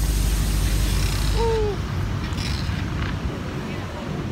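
City street noise: a steady hiss over a low traffic rumble, which drops away about a second and a half in. A brief falling voice sound comes just as it drops.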